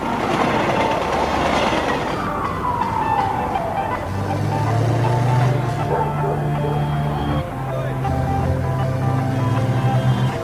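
Electronic synthesizer music: a noisy whooshing swell at the start, a single falling synth glide, then a steady low droning chord from about four seconds in.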